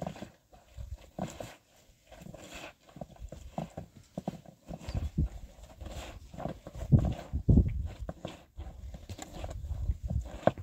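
Wet clothes being scrubbed and wrung by hand in a metal basin: irregular rubbing, splashing and knocking, with the heaviest knocks about seven seconds in.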